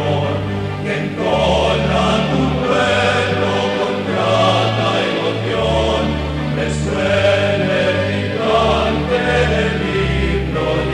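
Choir singing a hymn over a bass accompaniment, with held bass notes that change every second or so.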